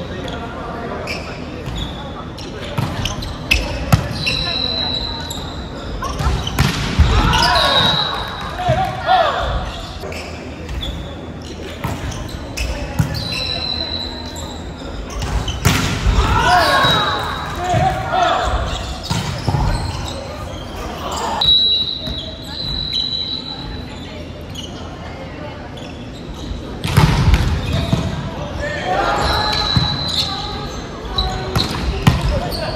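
Volleyball rally in a large, echoing gym: the ball struck again and again in sharp hits, with players shouting calls in bursts and brief high squeaks recurring every few seconds.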